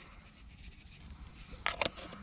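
Quiet handling of a small plastic tub as fine fluo breadcrumb is shaken out of it onto damp groundbait, with two short scratchy clicks near the end.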